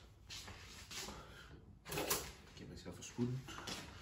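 A brief murmur of speech about three seconds in, with a few faint handling noises.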